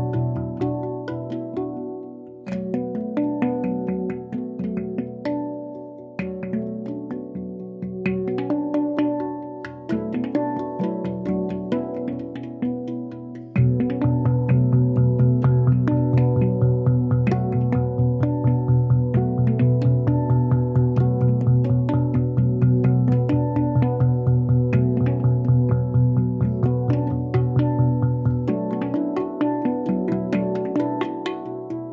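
A steel handpan played by two people at once, four hands striking its tone fields in ringing melodic patterns. About halfway through it grows louder, with a deep note ringing under quick, even strikes, and this eases off near the end.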